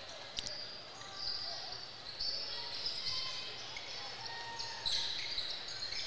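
A basketball bouncing on a hardwood gym court and short sneaker squeaks, with one sharp knock about half a second in.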